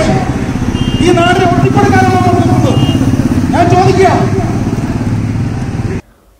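A man's voice through a microphone and loudspeaker, over the loud, steady low sound of a motor vehicle engine running close by in road traffic.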